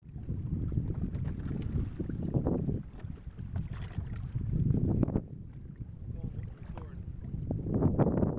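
Wind buffeting the microphone in uneven gusts over choppy open water, with waves washing past a small boat or kayak.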